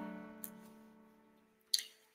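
An acoustic guitar's last strummed chord rings out and fades away over about a second. A short burst of noise follows near the end.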